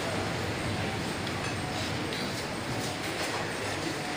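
Steady background din of a busy room, with a few light clicks of metal serving ware.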